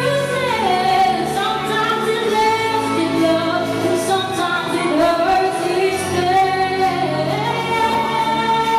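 A woman singing a slow song, holding long notes that glide up and down between pitches, over musical accompaniment.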